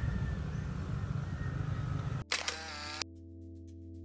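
Steady engine and wind noise of a motorcycle riding along. It cuts off abruptly about two seconds in, followed by a short sound effect and then soft background music with a light, even ticking beat.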